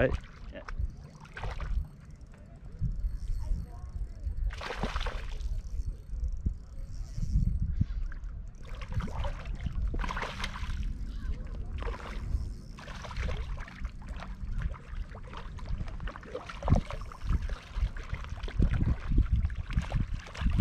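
Hooked rainbow trout splashing and sloshing at the water's surface as it is reeled in toward the bank.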